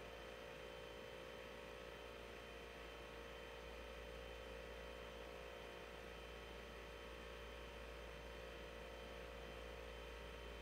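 Near silence: a faint, steady hum with background hiss, and no other sound.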